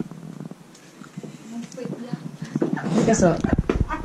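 Quiet voices talking, growing louder near the end along with a low rumble.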